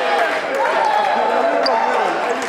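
Several men talking over one another and laughing excitedly, echoing in a gym.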